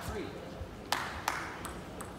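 Two sharp clicks of a table tennis ball about a second in, a third of a second apart, with a fainter click after them. A brief voice is heard at the start.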